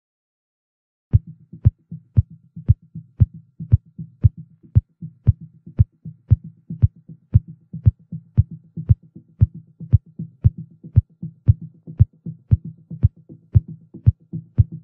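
Electronic dance music beginning about a second in: a steady four-on-the-floor kick drum, about two beats a second, over a low bass line.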